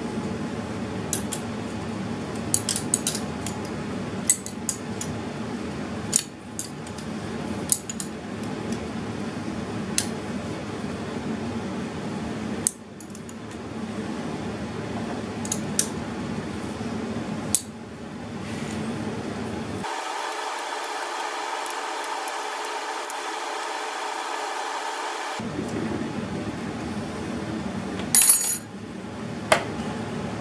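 Metal clinks and taps of bolts, washers and a wrench as a Ramsey RE-8000 winch is bolted down to a steel receiver-mount plate with grade 8 bolts. Scattered sharp clicks throughout, with a louder clatter near the end, over a steady background hum.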